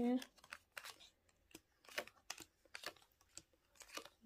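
Fortune-telling cards being dealt one at a time from a deck onto a table: a dozen or so short, light flicks and taps as each card is pulled off and laid down.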